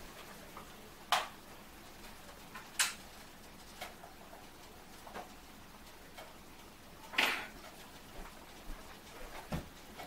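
A few scattered light knocks and clicks, about six in all, with a slightly longer one a little after the middle, from someone moving about a kitchen and working the stove controls to turn down the heat under a pot of boiling water.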